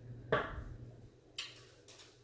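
A sharp knock, then two light clicks about half a second apart: small game pieces and measuring sticks being set down and handled on a wooden tabletop.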